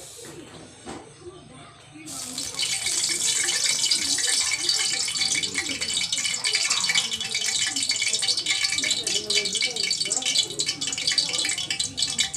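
Hot cooking oil sizzling and crackling loudly, starting suddenly about two seconds in, the sound of marinated milkfish frying in the pan.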